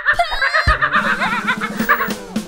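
A high-pitched cartoon voice in rapid, pulsing syllables, like laughing or warbled singing, over music, with a dull low thump about two-thirds of a second in.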